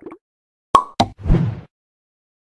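Sound effects of an animated outro title card: two quick pops about a quarter second apart, the first with a brief ring, then a short swoosh.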